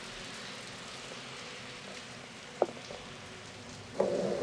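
Steady rain falling, heard as an even hiss, with one short click about two and a half seconds in.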